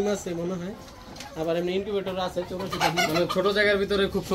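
Caged chickens calling with low, drawn-out notes, with a short lull about a second in.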